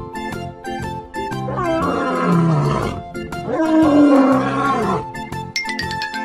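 Two lion roars, the second louder, each falling in pitch, over children's background music with plucked notes.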